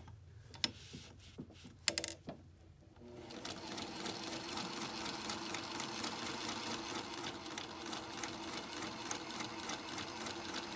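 An electric sewing machine stitching through a knitted piece, set to a small stitch length. A few sharp clicks come first. About three seconds in the machine starts and runs steadily, a fast even ticking of the needle over the motor hum.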